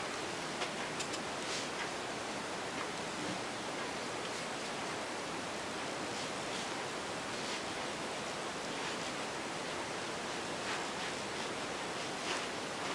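Steady hiss of recording noise, with a few faint, soft swishes from a fluffy powder brush being swept across the face.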